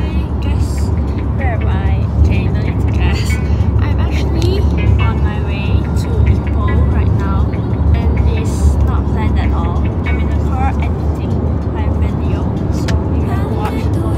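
Steady low road rumble inside the cabin of a moving car, with a girl talking over it.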